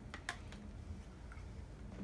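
Two light clicks close together near the start, then a fainter one, from small makeup packaging being handled, over quiet room tone.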